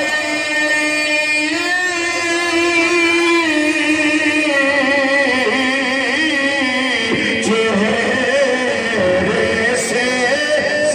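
A man singing a naat, an Urdu devotional song, into a microphone, drawing out long wavering notes with no clear words. The pitch steps down about three and a half and seven seconds in.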